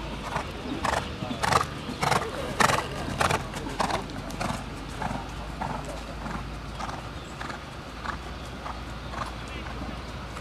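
A cantering horse's hoofbeats on sandy arena footing: a regular beat of dull thuds, about one stride every 0.6 s, loudest in the first three seconds.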